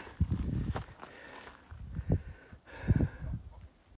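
Footsteps on a dirt hiking trail, a few irregular low thuds, with the swish of tall grass brushing past.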